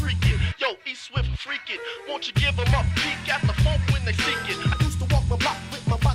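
Hip hop beat with rapping over it; the bass and drums drop out for under two seconds shortly after the start, then come back in.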